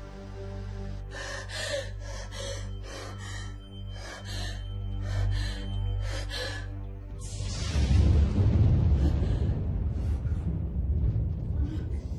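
Horror-film soundtrack: a low, steady musical drone under a woman's rapid, frightened gasps, followed about seven seconds in by a louder low rumbling swell.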